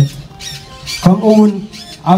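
A man reading a speech in Tigrinya into a handheld microphone, his voice amplified over a public-address system; after a short pause he speaks one brief phrase about a second in.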